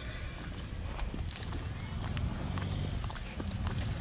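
Footsteps of a person walking, heard as irregular short clicks, two or three a second, over a low steady rumble on a handheld phone's microphone.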